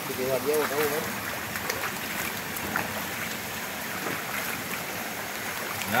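Steady rush of flowing spring water, with small splashes as a man bathing scoops and pours water over himself. A voice speaks briefly near the start.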